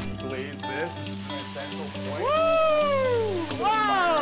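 Food sizzling in a pan on a gas range as it flares up in flames, over background music. A high, drawn-out exclamation rises and falls about two seconds in, and a shorter one follows near the end.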